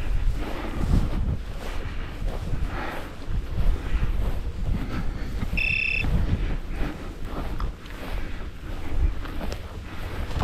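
Wind buffeting the microphone over footsteps swishing through dry prairie grass. A short high electronic-sounding beep is heard about halfway through.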